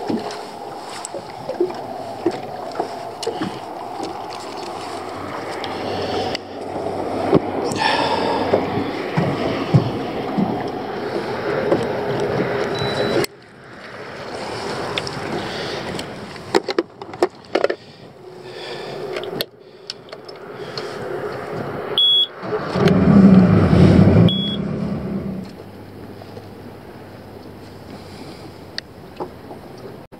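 Strong wind buffeting the microphone on a small fishing boat, with water lapping at the hull, in a steady rushing noise broken by several abrupt cuts. A louder low rumble lasts about two seconds, about three-quarters of the way in.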